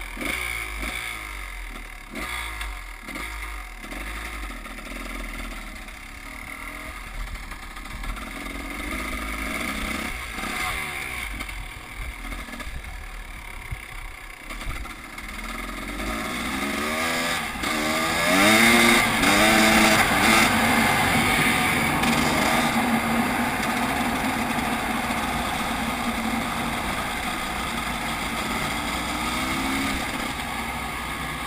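Two-stroke Husqvarna enduro dirt bike engine, heard from on board. It blips and revs at low speed at first. About sixteen seconds in it accelerates hard, the revs rising and falling through several gear changes, then holds a steady, louder high-rev note.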